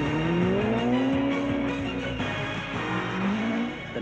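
Rally car engine revving up as the car accelerates: its pitch climbs over about the first second and holds, then climbs again near the end. Background music plays underneath.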